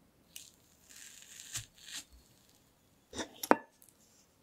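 A metal fork pressing down through a slice of soft sponge cake layered with cream, a soft tearing sound. Near the end a few sharp clicks come as the fork reaches the plate, the loudest a brief ringing clink of metal on the plate.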